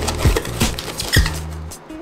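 Background music with a stepping bass line and a few drum-like hits, over light scratching of cardboard being pressed and folded by hand.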